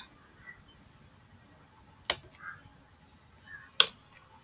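Two sharp computer mouse clicks, one about two seconds in and a louder one near the end, with faint room tone between them.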